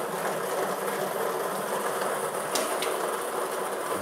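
Lottery draw machine running, its numbered balls clattering steadily in the mixing chamber, with two light clicks about two and a half seconds in.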